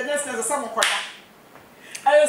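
A single sharp hand clap, a little under a second in, with a short ringing tail.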